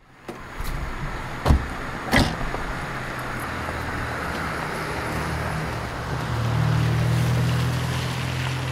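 Street traffic noise with a car engine's low hum, which grows louder about six seconds in. Two sharp knocks come about a second and a half and two seconds in.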